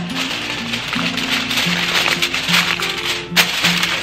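Background music, a simple melody of held notes, over the crinkling of aluminium foil being pressed and crimped around the rim of a glass bowl.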